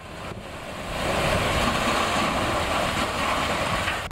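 Landslide: rock and earth debris crashing down a hillside onto a road, a dense rushing rumble that swells over the first second, holds loud, and cuts off abruptly near the end.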